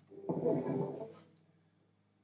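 Electric guitar strings brushed while the Squier Stratocaster is handled and turned over, ringing briefly and fading out after about a second, over a faint steady hum.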